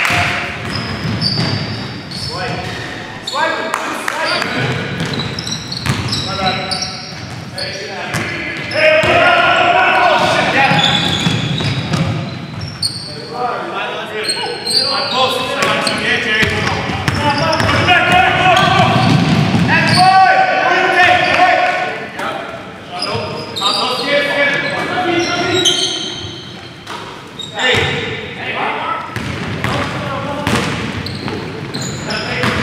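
Basketball being dribbled and bouncing on a hardwood gym floor during live play, with players' shouts and short high sneaker squeaks, all echoing in a large gym.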